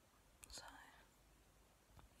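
Near silence, with one soft, breathy word spoken about half a second in.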